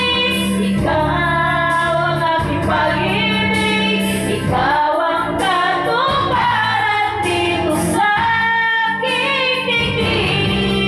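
A woman singing karaoke into a microphone over a backing track.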